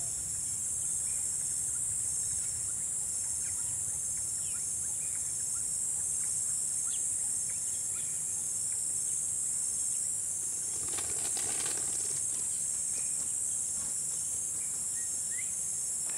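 Steady insect chorus, a continuous high-pitched buzz, with a few short chirps scattered through it.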